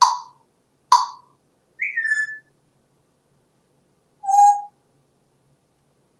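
African grey parrot vocalizing: two sharp clicks a second apart, then a short falling whistle about two seconds in and a short steady whistled note about four and a half seconds in.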